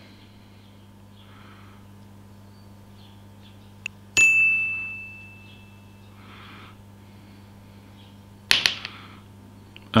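A small copper pipe ring drops off a wire and strikes a metal vise with one bright ringing ding about four seconds in, fading over about a second and a half. A steady low hum runs underneath.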